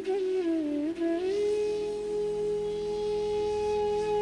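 Bansuri flute music: an ornamented melodic phrase that settles about a second in on one long held note, over a low steady drone.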